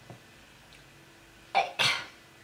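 A woman coughing twice in quick succession about one and a half seconds in, after a quiet pause.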